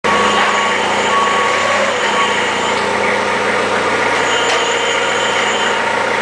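Forklift running steadily: a continuous, even mechanical drone with a few steady tones over it.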